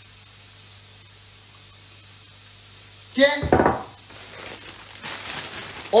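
A low steady hum. About three and a half seconds in there is a single thump, then a clear plastic food bag crinkles and rustles as it is opened.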